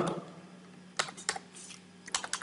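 Computer keyboard being typed on: a quiet first second, then a handful of sharp key clicks from about a second in.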